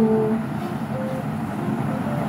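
A woman's voice drawing out 'so' and trailing off in the first half second, then a steady low background hum with a couple of faint, brief hums of voice.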